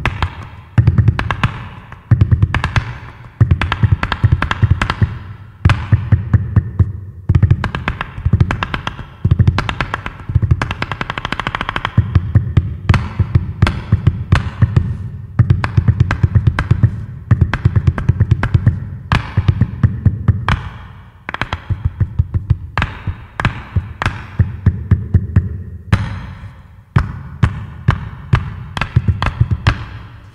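Percussion-driven African-European fusion music: rapid drum strikes in phrases of a few seconds with brief breaks between them, over a low bass.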